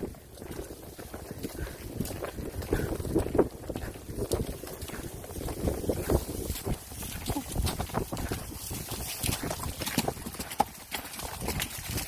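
Hoofbeats of ridden horses moving fast on a sandy dirt trail: a dense, uneven run of knocks.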